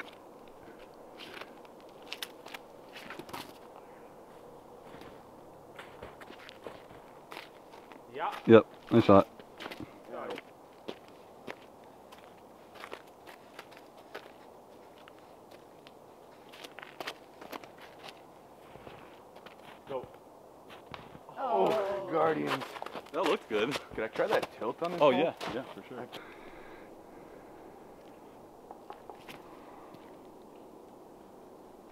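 Footsteps in wet snow: scattered, irregular soft crunches over a faint steady background, with two short stretches of people's voices, one about a third of the way in and a longer one about two thirds in, which are the loudest sounds.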